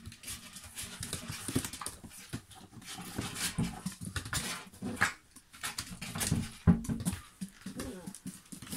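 Puppies playing with a plush toy and a cardboard box: a stream of short scratches and clicks from claws, toy and cardboard, with brief small puppy vocal sounds now and then.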